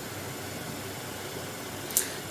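Steady room noise, an even hiss, with one brief click near the end.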